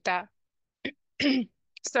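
A person's voice in short pieces: the end of a spoken word, then a short sharp sound and a brief voiced sound with a falling pitch near the middle, such as a throat clearing or a hum, before speech starts again near the end.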